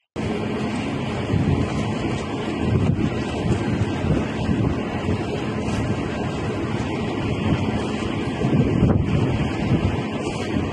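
Wind rushing over a phone microphone: a steady, noisy rush with gusty low rumble and no clear events.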